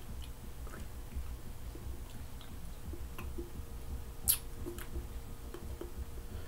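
Quiet mouth noises: scattered small wet smacks and tongue clicks, with one sharper click about four seconds in, over a low steady hum.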